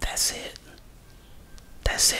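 A man's breathy whispering or exhaling into a close microphone, two short bursts: one at the start and one near the end.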